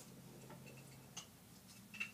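Near silence: room tone with a faint steady low hum and a few scattered faint clicks, the sharpest one near the end.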